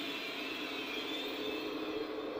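A steady ambient drone of held tones: a low hum with a fainter high whine above it, unchanging throughout.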